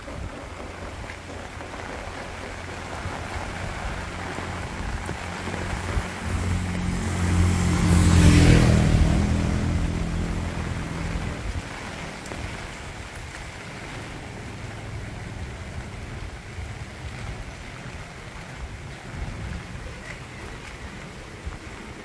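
Steady rain on a wet road, with an unseen vehicle driving past on the wet tarmac: it builds up, is loudest about eight seconds in, and fades away a few seconds later.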